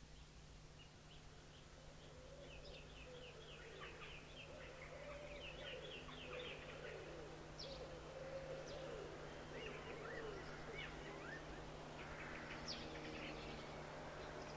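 Birds chirping in many short, quick calls, with a lower warbling line beneath them. A steady low hum runs underneath, and the whole sound grows slowly louder.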